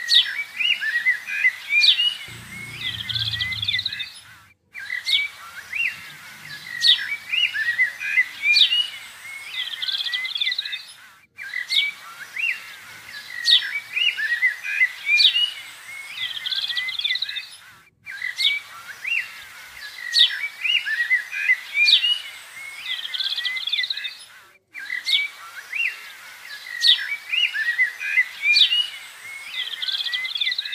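Small birds chirping and twittering in quick high notes. The same stretch of birdsong repeats about every six and a half seconds, each time ending in a brief gap: a looped birdsong recording.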